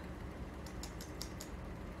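A short run of light, quick clicks, about six in under a second, a little before the middle, over a steady low room hum.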